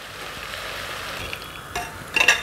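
Tea water poured from a pan through a metal strainer into a hot pressure cooker of fried chickpeas and masala, a steady hiss of pouring liquid sizzling on the hot masala.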